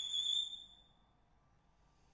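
A violin's very high held note ends about half a second in and dies away in the room. It is followed by a silent pause in the music.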